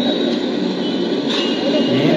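Loud, steady street noise from a roadside food stall, with indistinct voices in the background.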